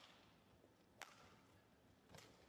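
Near silence, broken by a single faint sharp click about a second in.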